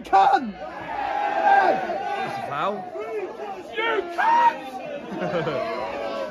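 Football crowd in the stands, many voices shouting and chattering at once, with a few loud shouts close by, the loudest just after the start and about four seconds in.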